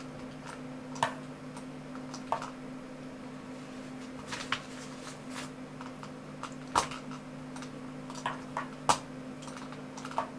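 Scattered computer mouse clicks, about eight in ten seconds with the sharpest near seven and nine seconds in, as chess moves are entered in a chess program, over a steady low electrical hum.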